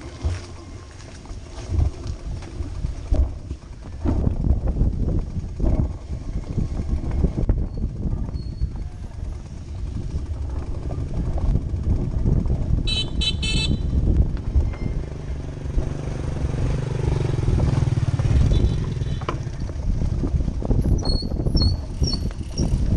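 A bicycle riding over a wooden plank bridge: a continuous low rumble, with the tyres knocking and rattling over the loose planks. A motorcycle engine runs nearby in the second half, and a short high-pitched ring sounds about 13 seconds in.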